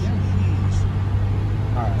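2021 BMW M4 Competition's twin-turbo straight-six idling steadily, a low even hum heard from inside the cabin.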